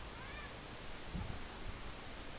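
A domestic cat gives a faint, short meow near the start. About a second in come two dull thumps as it jumps down from the sofa and runs off across the floor.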